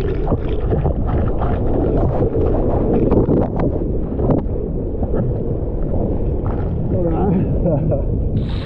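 Breaking whitewater churning and splashing over a GoPro held in the surf, a dull rush with many small splashes, muffled as the camera dips in and out of the water. A man laughs briefly at the start and his voice comes in again near the end.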